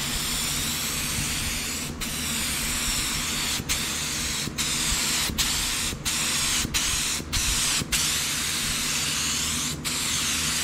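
Paint spray gun hissing as black paint is sprayed over a masked metal-flake kneeboard. The hiss breaks off for a split second several times, between spray passes.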